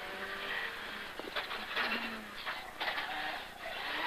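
Rally car engine heard faintly from inside the cockpit as the car brakes and drops from third to first gear for a left hairpin, with a few brief surges in engine note.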